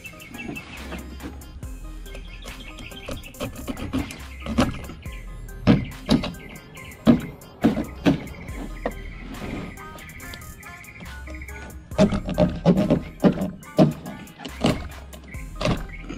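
Background music, with a series of sharp cracks and crunches as a serrated knife is pushed down through a redfish's rib bones along the backbone.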